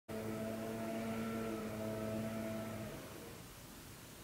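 A motor running steadily, a fairly faint drone at a fixed pitch, that cuts off about three seconds in.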